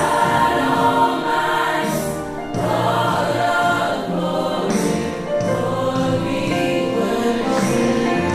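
Gospel choir singing in harmony, accompanied by keyboard and electric bass guitar.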